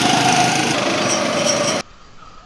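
Go-kart engines running loud and steady on the track close by, a continuous engine drone that cuts off suddenly near the end.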